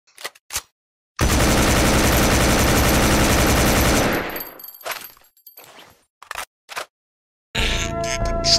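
Automatic gunfire: two single shots, then a sustained burst of rapid fire lasting about three seconds that trails off into a few scattered shots. Music begins near the end.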